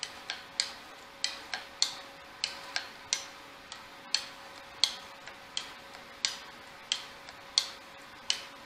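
Steel round burnisher drawn repeatedly along the edge of a card scraper clamped in a vise, each stroke giving a short sharp metallic tick, about three a second. The burnisher, held at 10 to 15 degrees, is rolling the scraper's burr over into a cutting hook.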